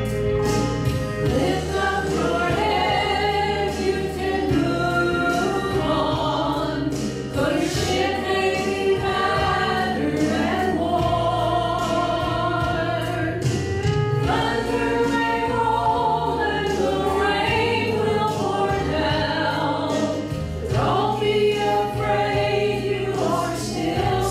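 Three women singing a gospel song in harmony into microphones, over an instrumental accompaniment with steady low bass notes that change every few seconds.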